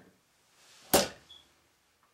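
A single sharp knock about a second in, preceded by a brief rustle, as something is handled at the floor drain pipe.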